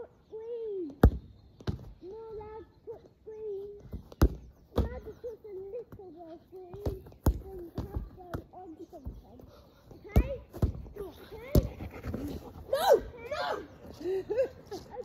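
A football being kicked and hitting, about ten sharp thuds spread through, under a high, wavering voice making wordless sounds nearly throughout.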